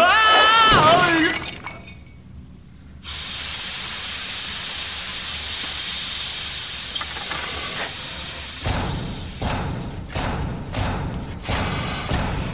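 Animated-series sound effects: a short gliding vocal cry, then a steady hiss of steam for about five seconds, then a run of clattering knocks and clinks.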